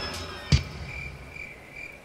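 A single thump about half a second in, then crickets chirping in short, evenly spaced pulses: the stock 'crickets' sound effect that marks a joke falling flat.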